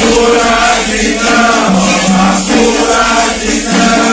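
Several voices singing a Candomblé chant together in a roda for Xangô, with a shaken rattle keeping time underneath.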